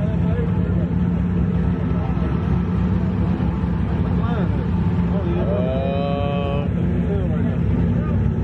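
Car engines idling with a steady low rumble, with people talking and calling out over it.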